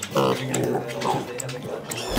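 Small pigs vocalizing: one short squeal just after the start, then quieter, shorter calls.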